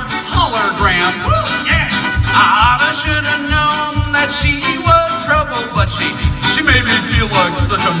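Live acoustic string band playing a bluegrass-style song: strummed acoustic guitar and bowed fiddle over a steady bass beat about three times a second, with sung vocals.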